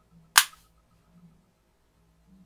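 A single sharp click about a third of a second in: a magnetic USB charging cable's tip snapping onto its adapter in a 4G mobile hotspot's charging port.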